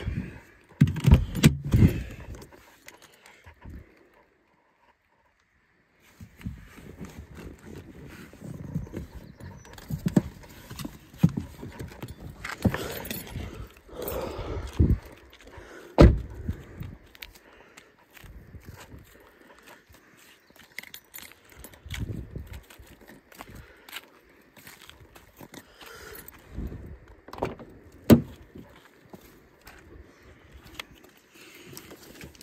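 Handling noise, rustling and footsteps of someone moving around a car, with a few sharp clicks and knocks from the car's doors and door handles. The loudest comes about sixteen seconds in and another near the end.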